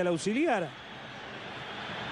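A man's voice briefly at the start, then a faint, steady hum of a stadium crowd from a football match broadcast.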